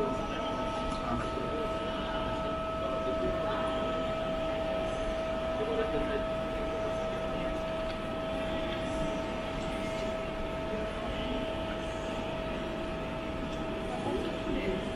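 Steady hum of an airport check-in hall: a constant mechanical drone with a steady high tone through it, and faint voices in the background.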